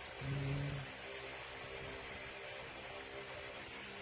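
A short, low hummed sound from a person's voice about a quarter of a second in, followed by faint steady background hiss.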